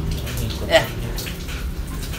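A short spoken "yeah" about three-quarters of a second in, over a steady low hum and hiss of background noise.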